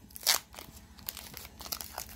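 Foil Pokémon booster pack wrapper crinkling and tearing as it is pulled open by hand. There is one louder crackle about a quarter second in, then a run of lighter crinkles.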